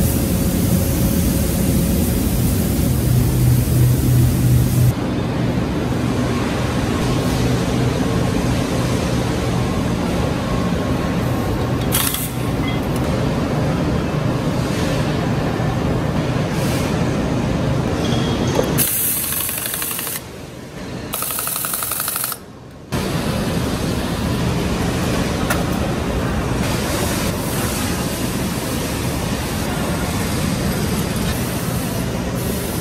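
Tractor assembly-plant floor noise: a steady mix of machinery hum and hissing air. A low hum stands out in the first few seconds, and the sound changes abruptly several times, dropping away briefly twice a little after two-thirds through.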